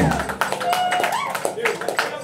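Live band in a small room: quick drum and cymbal strokes with voices over them, and a low thump right at the start.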